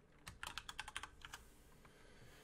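Faint typing on a computer keyboard: a quick run of about ten keystrokes in the first second and a half, as a username is typed into a form.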